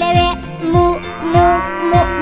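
A cow's moo, one long call rising then falling, starting about a second in, over a children's song's backing music with a steady drum beat.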